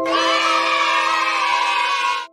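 A burst of cheering, shouting voices, in the manner of a 'yay' sound effect, comes in suddenly over a music jingle's held chord.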